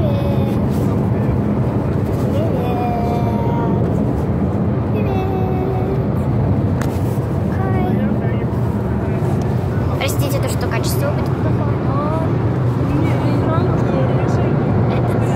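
Steady road and engine rumble heard inside a moving car's cabin, with a child's voice coming and going over it.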